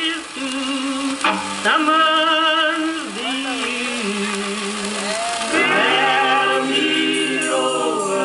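Live band music: long held sung notes with a wide vibrato and a few sliding pitches, without drums.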